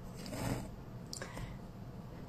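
Quiet room with faint rustling and a few soft clicks as a person shifts position on the floor, over a low steady hum.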